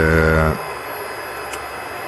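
A 3 kW air-cooled GMT milling spindle runs steadily at about 10,000 rpm, giving an even, continuous hiss. A man's held 'uh' is heard over it for the first half second.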